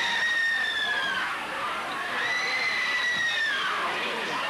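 A crowd in uproar just after a shooting, a loud jumble of voices with two long, high-pitched screams, each about a second and a half long, trailing off at the end.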